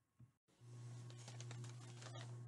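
Faint, irregular clicks and rustles of items being handled, over a low steady hum; both begin about half a second in.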